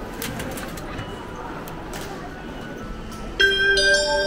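Station concourse noise with a few sharp clicks as a ticket passes through an automatic ticket gate. About three and a half seconds in, a much louder bell-like chime melody begins.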